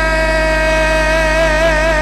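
Kurdish folk music: a male voice holding one long note with a gentle wavering vibrato over a steady low drone.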